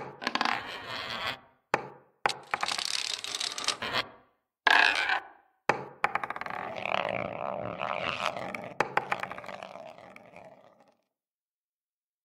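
Animated-outro sound effects of balls rolling and scraping, in several separate bursts, with sharp knocks and clicks as they drop and land. The sound stops about eleven seconds in.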